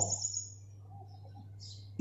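Faint chirping of small birds in the background, one high descending chirp just after the start and a few weaker calls later, over a steady low hum.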